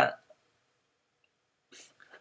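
A pause between spoken sentences: near silence, broken near the end by a brief soft breath-like noise just before speech resumes.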